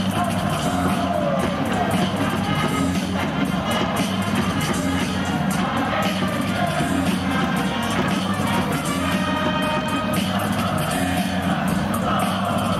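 Music played over the ballpark's public-address system, with crowd noise in the stands beneath it and a few held high notes in the second half.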